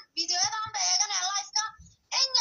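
A man speaking Somali in a running monologue; the voice sounds unnaturally high-pitched, with a brief pause near the end.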